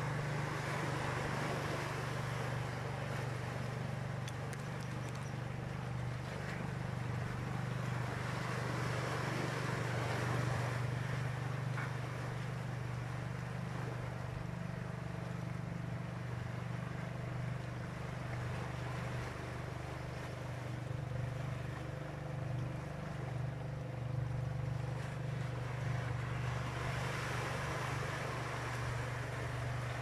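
A steady low motor hum runs under a rushing noise that swells and fades.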